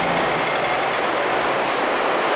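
Heavy rain falling, a steady hiss that sets in suddenly just before. A faint low hum under it fades out about a second and a half in.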